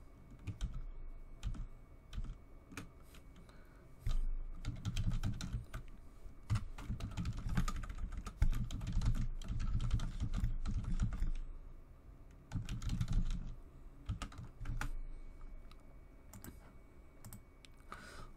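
Typing on a computer keyboard: irregular runs of key clicks with short pauses between them, and dull low thumps under the busiest stretches.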